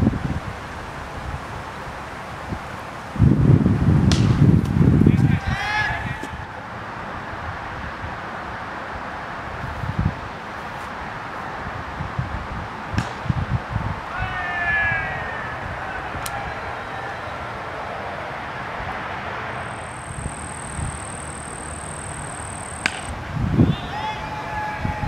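Cricket bat striking the ball, a sharp crack near the end, with a few fainter knocks earlier. Around it is open-air field sound: wind buffeting the microphone for about two seconds, three seconds in, and faint distant voices.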